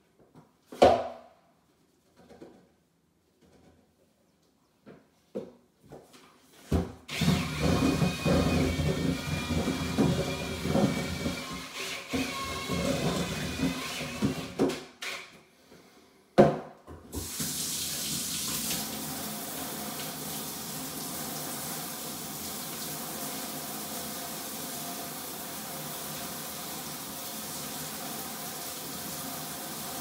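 Faucet water running into a sink while a drywall mud bucket and mixer paddle are rinsed out before the setting mud hardens. There are a few clicks and knocks first, then uneven splashing from about seven seconds in, and from about seventeen seconds a steady flow.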